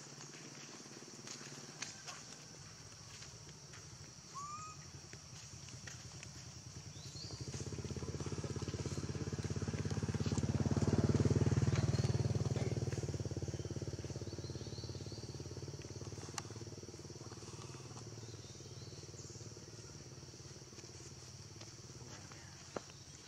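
A motor vehicle engine passing by, swelling over several seconds to its loudest about eleven seconds in and then slowly fading, over a steady high-pitched buzz.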